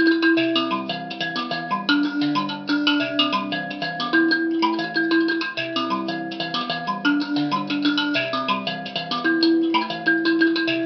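Njari, a Zimbabwean Shona mbira, plucked with both thumbs in a continuous repeating cycle of quick interlocking bass and treble notes.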